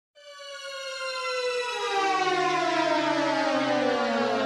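Intro sound effect for a logo animation: a rich tone with many overtones starts abruptly, swells and glides steadily downward in pitch like a slowing siren, with a low steady note joining underneath.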